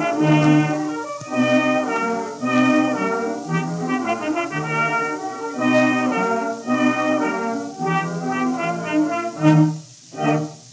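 A 1917 acoustically recorded orchestra on a 78 rpm shellac disc plays a lively theatre-music selection, with brass to the fore and surface hiss above. A loud accented chord comes near the end, followed by a short break.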